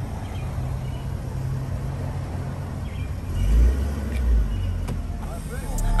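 Steady low rumble of road traffic, swelling louder twice a little past halfway.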